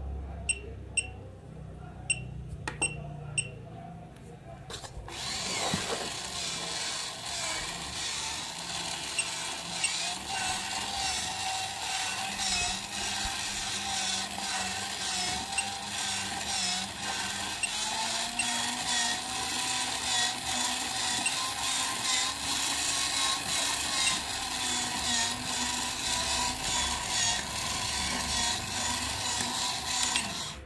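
The face bank toy's small electric motor and gear train whirring as it is driven from a bench power supply, starting about five seconds in after a few short clicks. The whine rises in pitch partway through as the supply voltage is raised toward 8 V.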